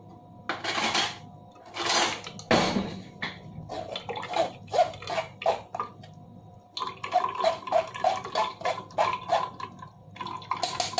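Metal spoon scraping and stirring in a fine-mesh metal strainer, pressing blended spinach pulp so the juice drains into a glass. The strokes come in a rhythm with a light metallic ring, quickening to about three a second in the second half. Two brief rushes of noise come in the first three seconds.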